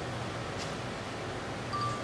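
Steady background hiss of room tone, with no distinct event, and a brief faint high tone near the end.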